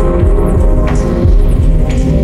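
Experimental vaporwave noise music: a loud, dense low drone and hum with throbbing bass thuds that slide down in pitch, and a short hissy hit about once a second.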